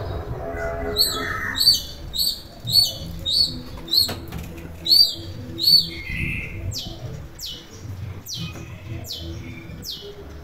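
Long-tailed shrike (cendet) calling loudly: a run of sharp, repeated high notes for about five seconds, then a quicker series of harsh notes that each slide downward.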